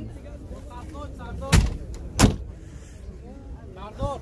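Lada 2107's door being shut: two sharp knocks about 0.7 s apart, over faint background voices.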